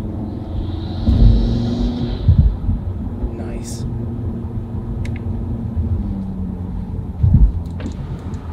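Audi TT RS's turbocharged 2.5-litre five-cylinder engine running on the move, heard from inside the cabin with an APR carbon fibre intake fitted. There is a steady drone, a hiss of intake air for about two seconds near the start that the driver calls squishy noises, and three heavy low thumps.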